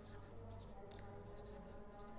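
Felt-tip marker writing on a whiteboard: a run of faint, short, irregular strokes as a square-root expression is written out.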